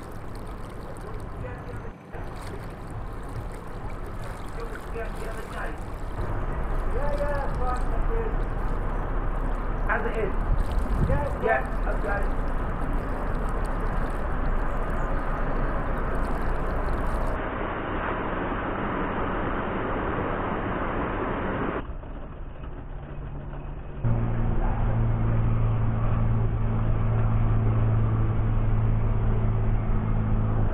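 A narrowboat's engine running at tickover, a steady low hum that becomes louder and more tonal about three-quarters of the way in. A few brief voices come about a third of the way in.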